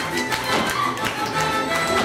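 Lively folk dance music led by fiddle, with the dancers' feet stepping and stamping on the stage floor in a steady rhythm.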